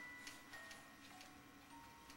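Faint lullaby from a baby's musical crib toy: single chime notes one after another at changing pitches, with a few faint clicks.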